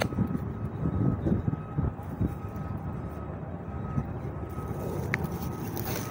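Low rumble of road traffic and wind buffeting a phone microphone, gusty in the first couple of seconds, with a faint steady high tone underneath.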